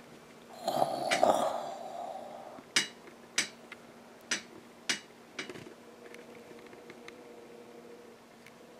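Handling noise as the camera is carried and set about: a brief rubbing rustle, then five sharp taps or knocks about half a second apart, followed by a faint steady hum.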